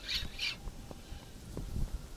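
Gusty wind rumbling on the microphone, with two short high-pitched sounds about a third of a second apart near the start.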